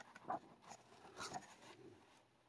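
Faint rustling of a paperback book's paper pages being leafed through by hand, a few soft page-turning rustles.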